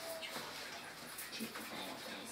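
Faint rustle of paper sheets being handled, with a few brief faint murmur-like sounds.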